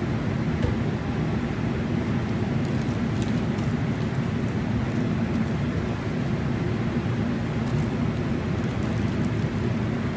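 Laminar flow hood blower running, a steady even rush of air. Faint paper-towel rustles come now and then as plastic grain bags are wiped down.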